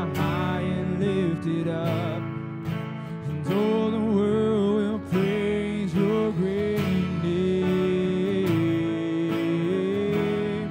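Live worship band playing a slow song: acoustic guitar strumming, with voices singing long, gliding melody notes.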